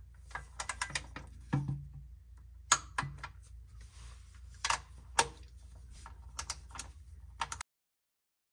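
Torque wrench ratcheting on transmission pan bolts as they are tightened to 20 foot-pounds one by one: bursts of quick ratchet clicks and several sharp single clicks. The sound cuts off suddenly near the end.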